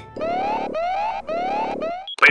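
Cartoon electronic alarm sound effect: a buzzy synthesized tone that sweeps upward in pitch three times, about half a second each.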